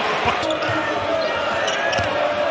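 A basketball dribbled on a hardwood court, a few short thuds, over the steady noise of an arena crowd.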